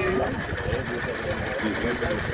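Small live-steam model locomotive running on a rolling-road stand, its driving wheels spinning on the rollers with a fast, even mechanical clatter.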